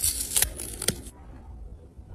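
Green plantain peel being torn off by hand: a few crisp rips and a sharp snap in the first second, then faint rustling.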